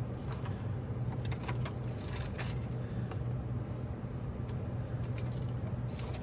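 Small scissors snipping a folded book page, a scatter of short snips and paper rustles over a steady low hum.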